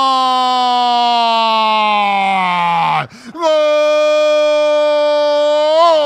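A male football radio commentator's drawn-out goal cry, a long held "gooool" that slides down in pitch and breaks off about three seconds in for a breath, then a second long held cry.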